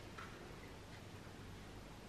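Quiet room tone with a few faint ticks, one a moment after the start and another about a second in.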